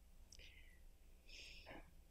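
Near silence: room tone with a low hum and two faint, short hissy sounds, the second a little longer and just past the middle.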